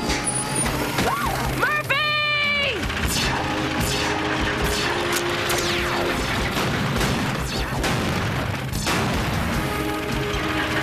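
Cartoon action soundtrack: driving background music under crash and impact sound effects. A short pitched cry rises and falls about two seconds in, and a falling whistle-like sweep comes near the middle.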